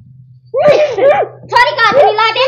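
A low steady hum, then about half a second in a woman's loud, high-pitched voice crying out in short broken bursts without clear words.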